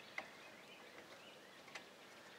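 Near silence: faint outdoor room tone, with a small click near the start.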